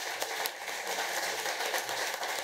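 Large audience applauding, many hands clapping at a steady level.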